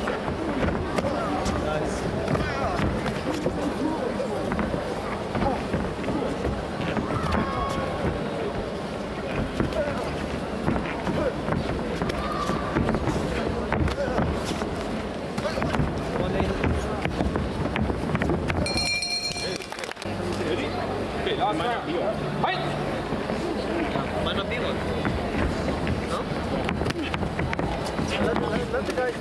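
Sparring bout in a large echoing hall: background voices and chatter with scattered thuds of kicks and punches and feet on the ring canvas. A brief high tone sounds about two-thirds of the way through.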